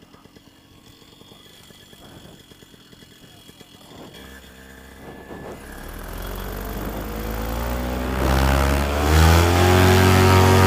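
Moster 185 single-cylinder two-stroke paramotor engine throttled up from low to full power for the take-off run. It is faint for the first few seconds, then from about four seconds in its pitch climbs steadily and it grows loud, settling at full power near the end.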